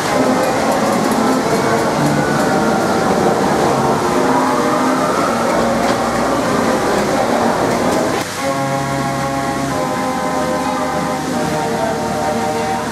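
A ghost-train car running along its track through the ride's doors, over music. About eight seconds in the sound changes suddenly to steady held chords of music.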